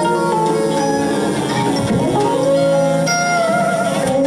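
Live improvised music: electric guitar notes ringing over several other sustained, overlapping tones, steady throughout.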